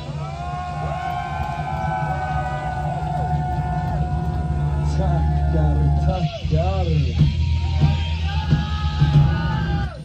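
Speed metal band playing live, heard from the crowd: loud distorted guitars holding sustained chords over bass and drums, then from about six seconds in the guitars play swooping, bending notes before the music stops abruptly near the end.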